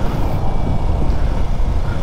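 Yamaha SZ single-cylinder motorcycle engine running while riding, under a steady rush of wind on the microphone that is strongest in the low end.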